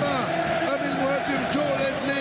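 A man's voice: Arabic football commentary, with drawn-out, rising and falling pitch, over a steady background of stadium crowd noise.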